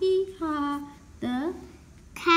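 A young child's voice imitating a donkey's bray, "hee-haw": a held higher note dropping to a lower one, then a short rising call about a second later.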